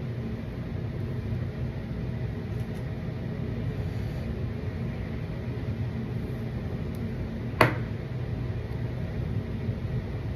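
Steady low mechanical hum, like a small motor running, in a small room. One sharp click cuts through it about three-quarters of the way in.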